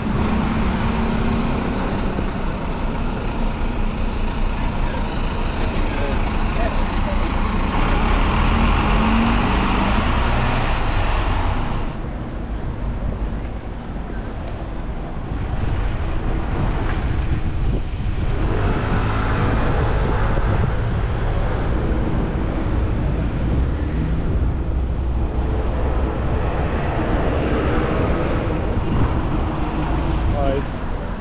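City street traffic: double-decker buses and cars passing with a continuous rumble of engines and tyres. It swells for a few seconds with a rising and falling whine about eight seconds in, then drops briefly before steadying again.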